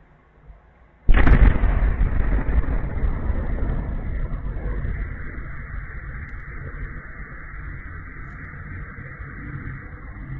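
A distant large explosion heard through a security camera's microphone: a sudden loud blast about a second in, followed by a long fading rumble over a steady background hiss.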